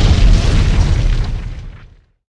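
Explosion sound effect: a deep boom that rumbles on and dies away to silence near the end.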